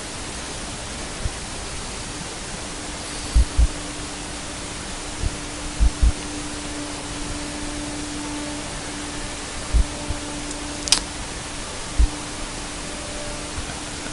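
Conquest 515 CNC router cutting parts from a sheet: a steady rushing noise with a faint steady hum under it. Several short dull low thumps, and one sharp click about eleven seconds in.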